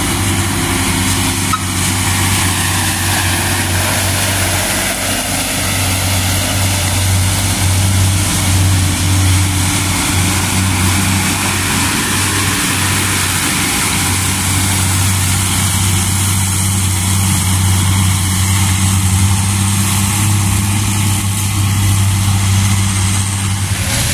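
Diesel engines of Hino dump trucks running under load as they drive past close by, a low steady drone with no break in it.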